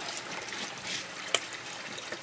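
Water pouring in a steady stream from a PVC spigot into a partly filled black plastic bucket, splashing onto the water surface. One small click about two-thirds of the way through.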